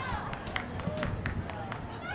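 Quiet field sound from a soccer match: faint distant shouts from the players, with a run of light sharp taps about three a second.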